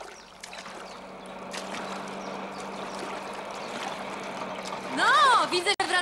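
Water rushing and splashing around a rowing boat as the oars pull through it, growing gradually louder. Near the end a voice calls out loudly.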